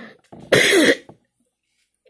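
A man coughing into his hand during a coughing fit: one harsh cough about half a second in.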